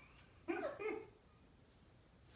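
A woman laughing: two short, breathy bursts of laughter close together, then quiet room tone.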